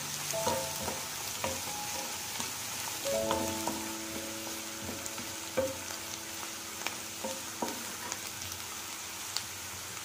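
Chopped onion and cumin seeds sizzling in hot oil in a pan, stirred with a wooden spatula that scrapes and taps the pan now and then. Soft background music plays underneath.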